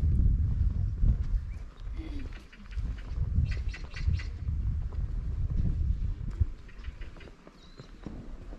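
Outdoor ambience dominated by an uneven low rumble, with faint high animal calls around the middle.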